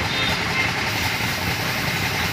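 Steady mechanical running noise, even in level throughout, with a broad hiss over a low hum.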